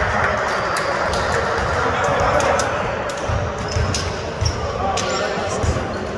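Basketball being bounced on the court during a game, a run of dull thumps mostly in the second half. Sharp high clicks come through over a steady wash of voices in a large hall.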